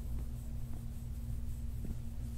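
Plastic massage star rubbed and pressed over bare skin: faint rubbing with a few small ticks, over a low steady hum.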